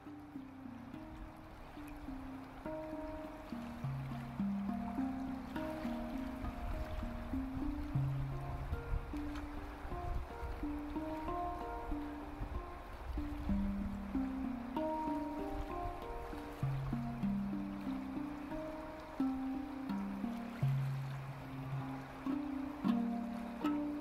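A steel handpan played solo with the hands: single ringing notes struck about one or two a second, each sustaining and decaying into the next in a slow, gentle melody. A low rush of flowing river water runs underneath.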